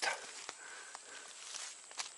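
Quiet forest ambience: a faint steady high-pitched insect drone, with a few light clicks and rustles from twigs and leaf litter.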